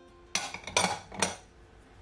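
Glass bowls and utensils clinking three times, about half a second apart, each with a short ring.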